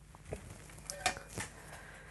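A few light clicks and knocks as a flat piece is handled and set down on a desk, over quiet room tone.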